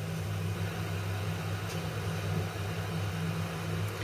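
Steady low machine hum with two constant low tones, like a motor or appliance running.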